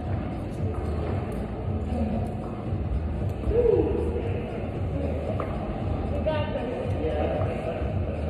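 Indistinct chatter of people in a large indoor gym hall over a steady low hum, with a brief louder voice about three and a half seconds in.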